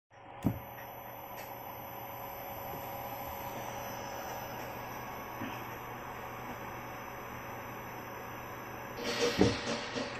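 Panasonic MSMA082P1A AC servo motor running on a test drive, giving a steady electrical whine over a low hum. A single sharp knock comes about half a second in, and louder, uneven noise starts near the end.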